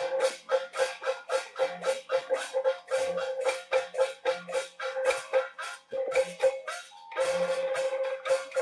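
A Beiguan percussion band playing, with drum, gongs and cymbals struck in a fast, even rhythm of about five strokes a second over a held tone. The strokes thin briefly near the end, then come back in full.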